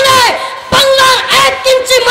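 A boy preacher shouting his sermon into a microphone in a high, strained voice, several short phrases, each held and then falling in pitch at the end.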